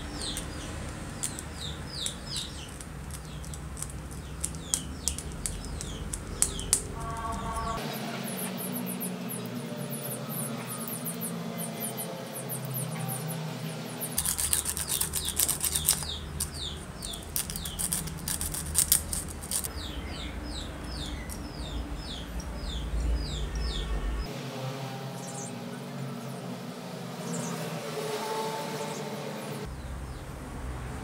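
Small birds chirping over and over in short falling notes, with small clicks from handling the drill's switch and wiring and a scratchy rubbing of sandpaper on a switch part around the middle.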